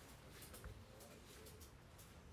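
Near silence: room tone with a low hum and a few faint clicks about half a second in.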